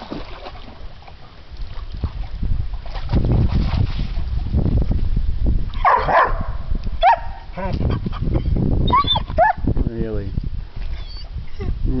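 A young German shepherd splashing and scuffling out of a creek, then giving a run of short, high yelps and whines mixed with barks in its second half.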